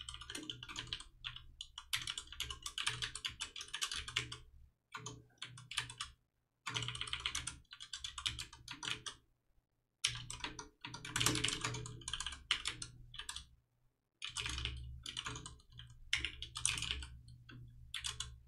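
Computer keyboard typing in quick bursts of keystrokes, with short pauses between the bursts.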